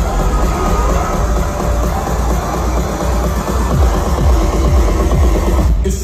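Loud electronic dance music on a festival main-stage sound system, with heavy bass and a steady beat.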